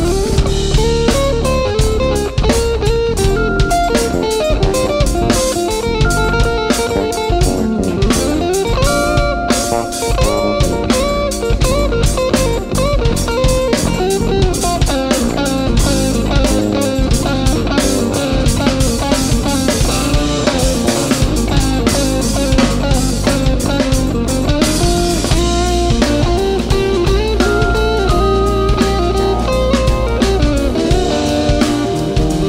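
Live instrumental rock band: electric guitar playing lead lines with bent and sliding notes, over bass guitar and drum kit.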